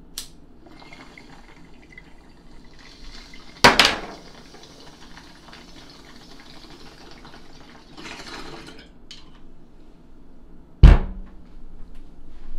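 Water bubbling in a glass bong as smoke is drawn through it for several seconds. A sharp loud knock comes about four seconds in, and a heavier thump near the end is the loudest sound.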